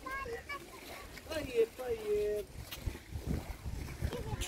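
Voices of people talking at a distance, heard briefly at the start and again in the middle, over a low, uneven rumble of wind on the microphone.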